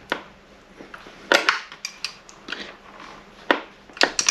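A metal wrench clicking and knocking against the valve-cover bolts of a small four-stroke outboard as they are worked loose. There are a few sharp clicks: one at the start, two more about a second and a half in, and one near the end, with faint handling ticks between them.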